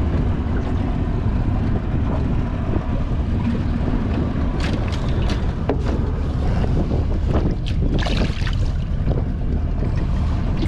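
Wind buffeting the camera microphone over open water, a steady low rumble throughout, with a few short knocks and clicks from handling on the boat. A brief splash near the end as a flathead is released over the side.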